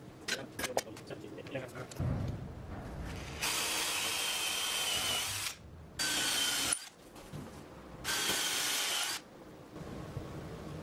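Cordless drill boring a dowel hole through a mortise-and-tenon joint in a sapele door frame, in three runs: a long one about three and a half seconds in, then two shorter ones, each with a thin whine over the cutting noise. Light knocks and clicks come before the drilling.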